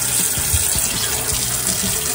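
Kitchen faucet running steadily, its stream of water pouring into a plastic dishpan in the sink to fill it with sudsy dishwater.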